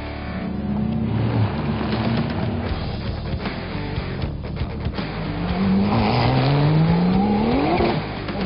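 A race car engine running and accelerating, its pitch climbing steadily over the last two seconds or so, with music underneath.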